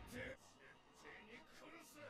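Near silence, with faint dialogue from the anime episode playing in the background.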